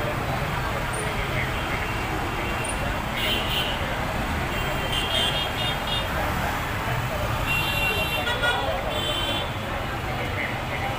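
Busy city street traffic: a steady bed of auto-rickshaw, motorcycle and car engines with crowd voices. Short vehicle horn toots sound several times, about three, five and eight seconds in.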